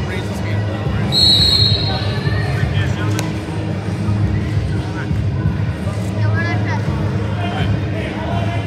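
Gymnasium crowd chatter and voices during a wrestling meet, with a single short referee's whistle blast about a second in.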